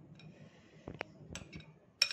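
Faint clicks of a spoon against a glass bowl as thick, sauce-coated filling is scraped out of it, the sharpest click about a second in.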